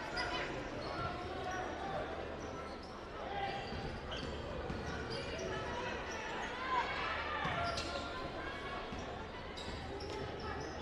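Basketball being dribbled on a hardwood gym floor during live play, with indistinct voices from players, coaches and spectators in a large gym.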